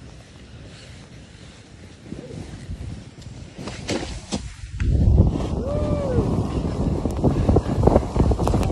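Wind buffeting the microphone and the rush of a board's edges carving down a snow slope at speed, growing much louder about five seconds in.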